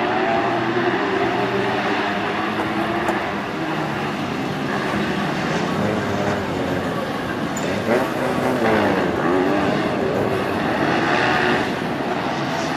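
Small 125 cc racing buggy engines running hard on a dirt track, their pitch rising and falling as they rev through corners and gear changes, with a marked rise and fall about eight to nine seconds in as one comes past.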